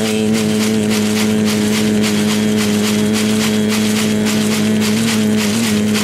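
A man's voice holding one long, steady sung note for the whole six seconds at the end of a phrase of an Amazonian healing chant (ícaro).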